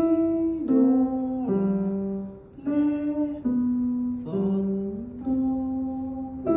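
Music: a slow melody of held notes, about one note a second, some sliding slightly into pitch.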